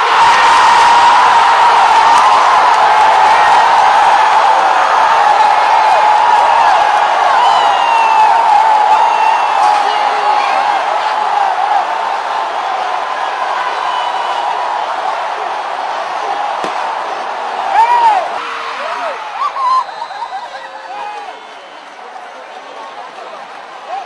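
Stadium football crowd cheering and shouting, many voices at once, loudest at the start and slowly dying down, with a brief louder shout a little before the end.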